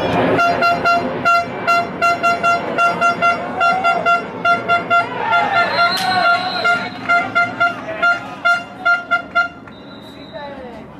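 A horn tooted over and over in short blasts on one steady pitch, about three a second, with a few voices calling out about halfway through.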